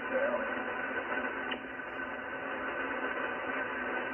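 Icom IC-746PRO transceiver's speaker hissing with band noise while receiving lower sideband on 7.200 MHz in the 40-metre amateur band, a gap between talkers. Faint steady tones run through the hiss, and a faint voice fragment comes through briefly near the start.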